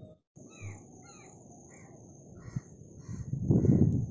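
Crows cawing repeatedly in a string of short calls about twice a second, over a steady high hiss. Near the end a louder low rumbling noise takes over.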